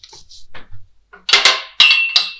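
Sharp clattering knocks in the second half, the last ringing on briefly as a metallic clink: the just-disconnected oxygen supply hose and its metal quick-connect coupling being handled and set down on a hard surface.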